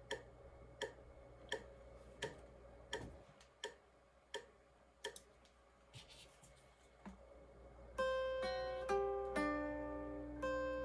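Hollow-body electric guitar practice. For most of the stretch only a steady click is heard, keeping time about once every three-quarters of a second over a faint amplifier hum. About eight seconds in, picked guitar notes start ringing out on the beat.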